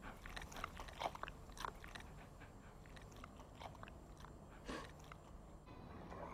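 Faint chewing: scattered soft clicks and crunches from a puppy, a few a little louder than the rest.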